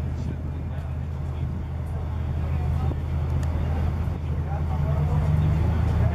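Steady low hum, with faint, muffled chatter of people waiting in a queue.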